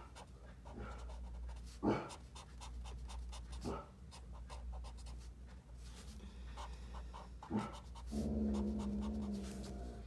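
A dog panting, with the faint scratch of a felt-tip marker on paper. Near the end comes a low steady hum lasting about a second and a half.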